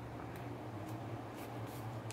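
Faint scratchy rustling of sewing thread being drawn through gathered grosgrain ribbon, a few short soft strokes, over a low steady hum.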